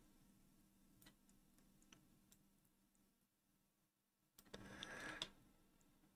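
Near silence: faint room hum with a few scattered faint computer-mouse clicks as nodes are dragged, and a brief faint rustle about four and a half seconds in.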